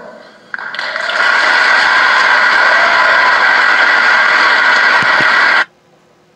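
Large audience applauding: the clapping swells in about half a second after the line ends, holds steady, and cuts off suddenly near the end.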